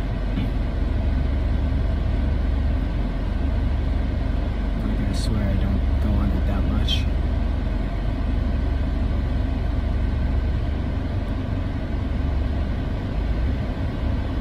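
Steady low rumble inside a car's cabin, with a person yawning about midway through.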